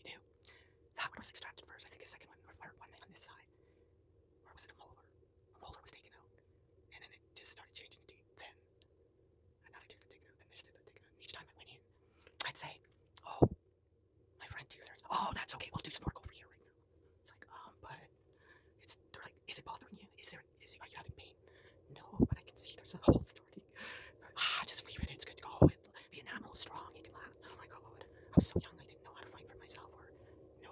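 Close-miked whispering with mouth sounds: lip smacks and tongue clicks scattered irregularly through it, over a faint steady hum.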